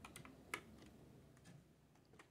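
Computer keyboard keys clicking under a cat's paws as it steps across them: a few scattered, irregular key clicks, the loudest about half a second in.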